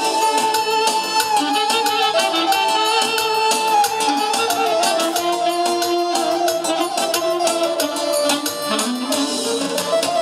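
Live band playing Romanian party music: a melody of long held notes over a steady beat.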